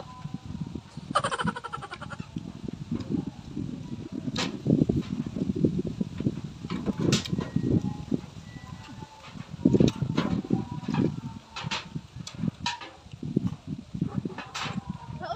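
Close-up chewing and crunching of unripe mango slices: irregular mouth sounds with scattered sharp crunches. A short pitched call sounds about a second in.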